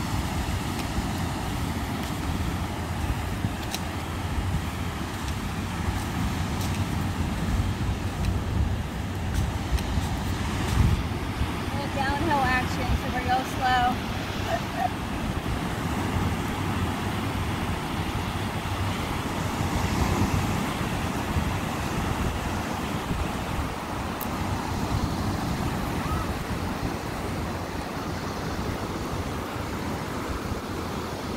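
Steady wind rumbling on the microphone over the wash of ocean surf, with a brief faint voice about twelve seconds in.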